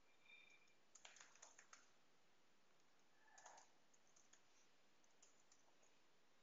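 Faint computer keyboard typing: a quick cluster of key clicks about a second in, then scattered keystrokes through the second half.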